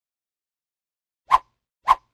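Silence, then two short pop sound effects about half a second apart in the second half, one for each logo letter appearing.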